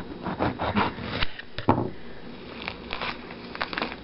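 Kitchen knife sawing through the thick, pithy rind of an ugli fruit in a quick run of short crackly strokes. Near the end come quieter scattered crackles as the peel is pulled apart by hand.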